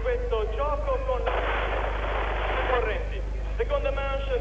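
A sudden burst of crackling noise about a second and a half long, starting about a second in and cutting off sharply, with voices before and after it.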